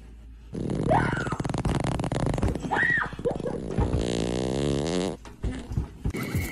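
A long, rattling fart that squeaks up and down in pitch, starting about half a second in and cutting off about five seconds in.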